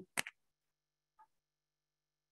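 A short sharp click about a fifth of a second in, then near silence with one faint tick about a second later.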